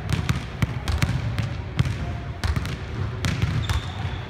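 Basketball dribbled on a hardwood gym floor: an irregular run of sharp bounces that echo in the hall.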